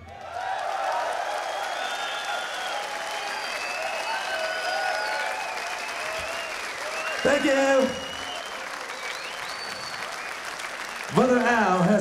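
Concert audience applauding and cheering, with whistles, after a rock song ends. A man's voice on the PA speaks briefly over it about seven seconds in and again near the end.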